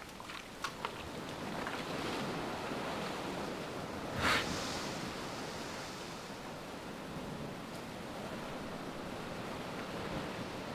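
Ocean surf washing over a rocky shore shelf, a steady rush of water, with one short, louder splash of a wave about four seconds in.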